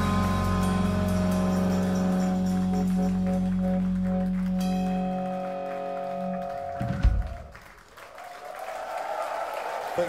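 A live rock band holds a long final chord on electric guitar, organ and bass, and ends it with a single sharp hit just before seven seconds in. The crowd then starts applauding and cheering, growing louder toward the end.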